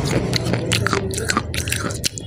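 Close-miked biting and chewing of a crumbly white chalk-like substance, with irregular crisp crunches several times a second.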